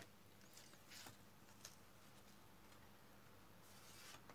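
Near silence, with a few faint, brief scrapes of tarot cards being slid and handled on a wooden tabletop, about half a second and a second in and again near the end.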